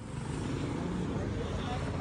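A motorcycle engine running steadily, a low continuous rumble, with people talking over it.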